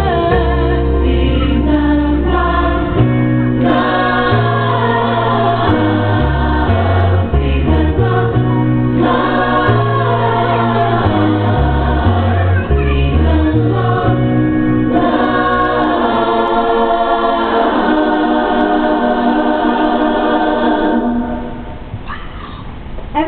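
A mixed group of men and women singing a song in harmony through handheld microphones, over a bass line that steps from note to note. The final chord is held and fades out about a second before the end.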